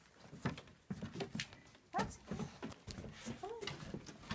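Footsteps and paw steps knocking on wooden porch boards, with two short whines from a dog: one falling in pitch about halfway through, another near the end.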